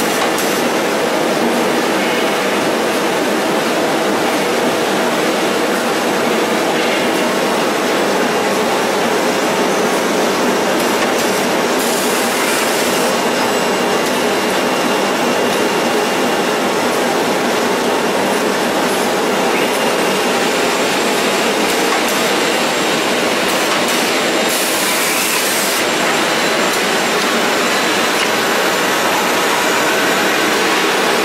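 Handkerchief tissue paper machine line running with a steady, dense mechanical clatter. Twice there is a short high hiss.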